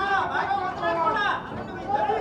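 Speech: a woman speaking into a handheld microphone.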